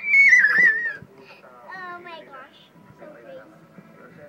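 A child's loud, high-pitched squeal that rises and holds for about a second, followed by quieter child voices.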